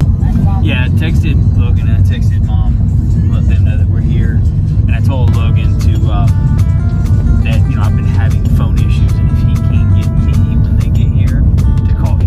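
Loud, steady road and engine rumble inside a moving car's cabin, with music and voices playing over it.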